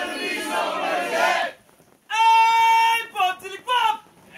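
A group of people shout-singing a line of a chanted song together, then after a short pause a single voice sings one long held note followed by a few quick phrases that slide in pitch.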